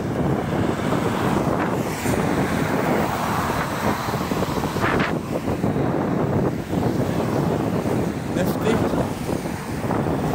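Cars driving past on a busy road, a steady rush of tyre and engine noise, with wind buffeting the microphone.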